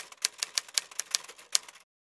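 Typewriter keys clacking as a sound effect: a quick, slightly irregular run of clicks, about six a second, that stops shortly before the end.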